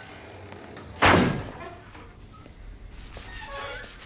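A toilet-stall door slams shut once, about a second in, with a short echo off the tiled room.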